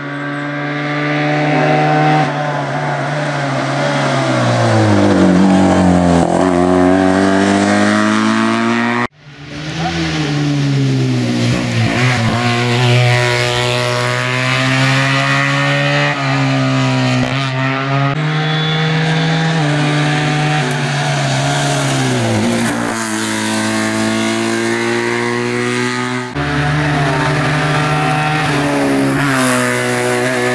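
Tuned Fiat 500 hillclimb racing car's engine revving hard, its pitch climbing through the gears and dropping back on the lift-off and braking for the bends. The sound breaks off suddenly twice, about nine seconds in and again near the end, and picks up at a different point.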